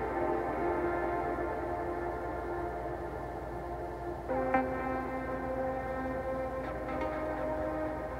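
A software synthesizer loaded as an AUv3 instrument in Drambo, playing long held notes from the step sequencer, with a new note entering about four seconds in. Step probability has been lowered, so not every step in the pattern sounds.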